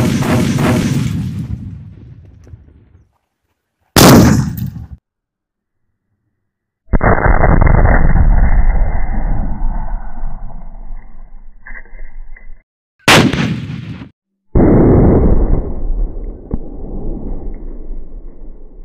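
A nail-covered sutli bomb firecracker exploding beside a steel thali, fired from a battery: a sharp bang that dies away over about three seconds, then the same blast again about four seconds in and around thirteen seconds. Between these come slowed-down, muffled, drawn-out versions of the blast, from about seven seconds and again from about fourteen seconds.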